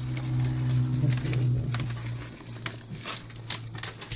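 Bacon bits shaken from a plastic pouch and scattered by hand over pizza toppings: a light rustle and patter of small pieces, with scattered clicks mostly in the second half. A steady low hum runs under the first half and fades out near the end.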